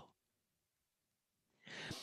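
Near silence, then near the end a short breath drawn in by a man before he speaks again.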